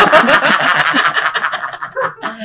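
Men laughing hard together, the laughter loud at first and dying down toward the end.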